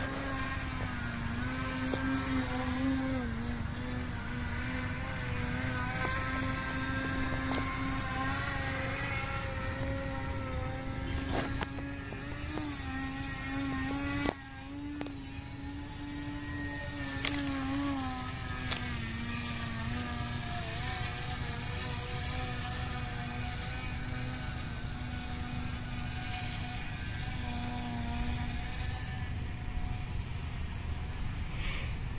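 Radio-controlled aerobatic model airplane in flight, its motor and propeller droning steadily, the pitch rising and falling through the manoeuvres. The sound drops suddenly about fourteen seconds in, then builds again.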